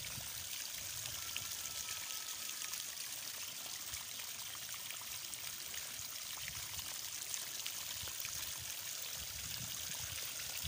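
Water spraying from the end of an irrigation hose into a soil furrow between crop rows, a steady splashing hiss.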